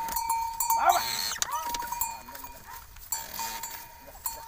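Several short, drawn-out vocal calls that rise and fall in pitch, over a steady high ringing tone.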